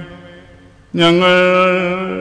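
A male voice chanting Syriac-rite liturgical chant: after a brief lull, a long sustained note begins about a second in and is held steadily.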